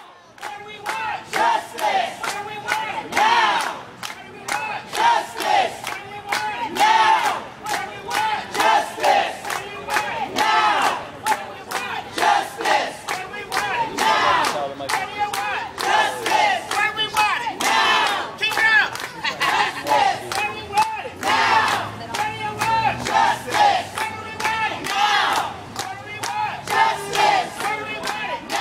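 Crowd of protesters shouting and chanting in unison at a rally, the massed voices rising and falling in repeated loud pulses.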